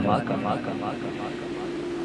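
Amplified male voice through a public-address system, its echo fading out in a pause between phrases, over a steady drone.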